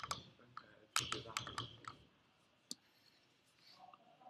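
Faint computer-mouse clicks: a couple at the start, one on its own, a quick run of several about a second in, and a last single click near the middle.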